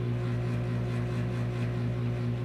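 Steady low hum with a faint buzzing tone, the room's background noise, with no distinct event.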